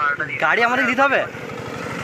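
A person's voice for about a second, then a motor vehicle on the road coming closer, its engine and tyre noise slowly growing louder.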